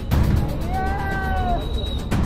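A woman's high, drawn-out wailing cry in grief, rising and then falling away within about a second.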